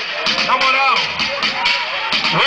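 Live Brazilian funk music: a vocalist's voice over a dense backing track with a steady beat.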